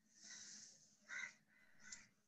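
Near silence, with three faint, short, hoarse sounds; the one about a second in is the loudest.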